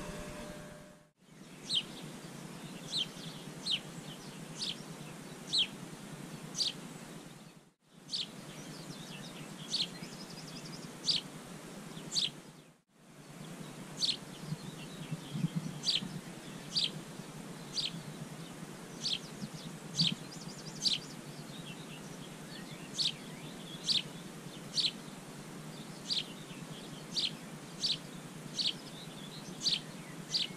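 Birdsong: a bird repeating a short, high, downward-sweeping chirp about once a second over a steady faint background hiss. The sound cuts out briefly three times.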